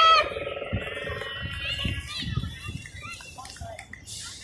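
Women's voices calling out across a sports field: a loud, held call at the very start, then fainter scattered shouts from players further off.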